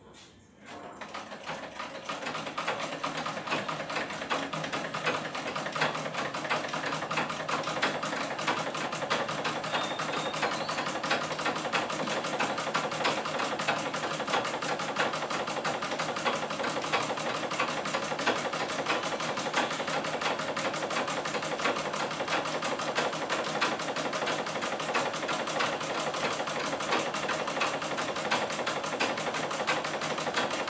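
Black domestic sewing machine stitching cloth. It starts about a second in, picks up speed over the next couple of seconds, then runs steadily with a rapid, even needle clatter.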